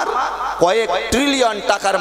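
Only speech: a man preaching in Bengali into a microphone.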